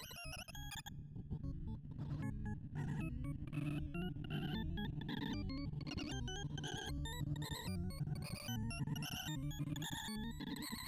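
Sorting-visualizer sonification: a rapid, jumbled run of short electronic beeps whose pitch tracks the values being compared and moved as WikiSort does its final pairwise pass over 256 values. A steadier musical bed runs underneath.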